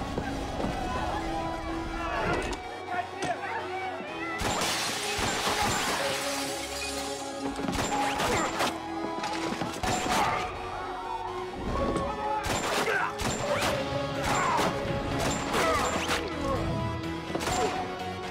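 Film action soundtrack: a tense music score under gunfire, with a long stretch of shattering and crashing debris a few seconds in, then many sharp shots and impacts through the second half.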